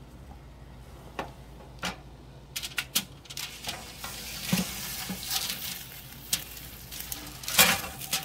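Pork hock sizzling in its hot drippings on a foil-lined oven tray as it is turned with silicone-tipped tongs, with the foil crinkling and the tongs clicking. The crackle grows denser about a third of the way in, and there is a sharper clatter near the end.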